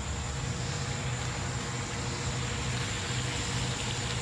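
Steady low hum with a faint high-pitched whine, unchanging throughout.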